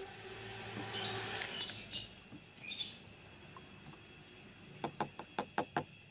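Plastic spoon stirring insecticide powder into water in a plastic tub, giving a soft swishing and scraping hiss for the first two seconds. Near the end comes a quick run of about six light taps in a second.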